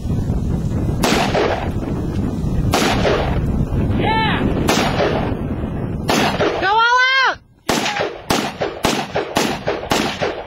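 Ruger SR-556 semi-automatic 5.56 rifle fired about ten times, single sharp shots. They are spaced a second or more apart at first and come quicker, roughly two a second, near the end.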